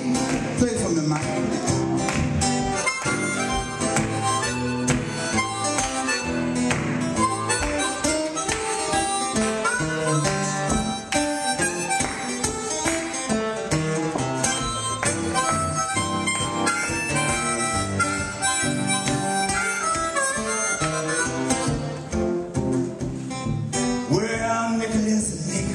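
Blues harmonica solo played into a vocal microphone, with held and bending notes, over steady acoustic guitar accompaniment.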